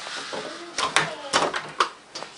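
Several sharp knocks and clicks with light rustling, four of them close together in the second half.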